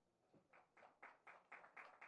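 Faint hand clapping from a few people, starting about half a second in as a quick, even patter of claps, about four a second.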